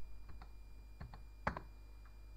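A few separate keystrokes on a computer keyboard, the loudest about one and a half seconds in.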